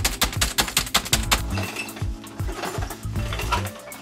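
Fast, hammering typing on a computer keyboard, a dense run of rapid key clicks that thins out about a second and a half in. Background music plays throughout.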